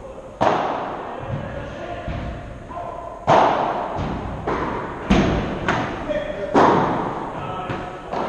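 Padel rally: a string of sharp hits of the ball on the rackets and court, roughly a second apart, each ringing out in the echo of a large hall. The loudest hits come about a third of the way in, past the middle, and near two-thirds through.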